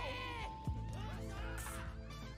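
A high, strained shout of "Tsukki!" from an anime character, with the episode's background music underneath.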